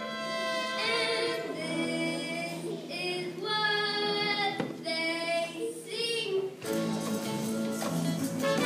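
A child singing solo into a microphone over a musical accompaniment, with long held notes that waver in pitch. About seven seconds in, the accompaniment turns fuller and louder.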